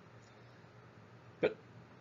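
Faint room tone between sentences, broken about one and a half seconds in by one short, sharp mouth sound from the lecturer.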